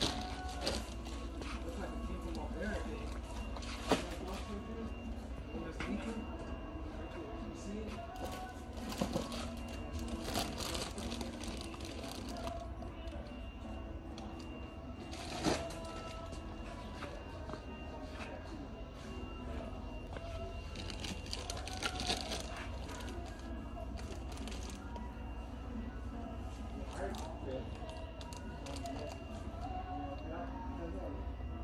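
Busy indoor background of music with faint, indistinct voices, and a few sharp knocks and clatters, the clearest about four seconds in and again about halfway through.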